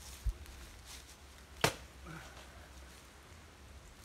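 Machete chopping into the soft, watery trunk of a banana plant: one sharp chop about one and a half seconds in, with a dull thud near the start and a weaker knock shortly after the chop.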